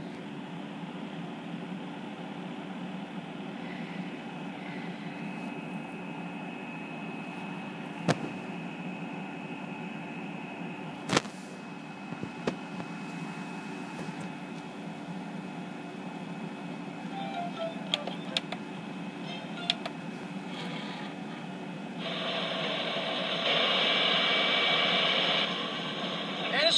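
Steady background hum and hiss with a faint high whine, broken by a few sharp clicks. About four seconds before the end, a louder rushing noise comes in and steps up again a second and a half later.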